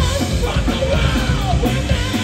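Live heavy metal band playing: distorted electric guitars and a drum kit, with a singer shouting into the microphone.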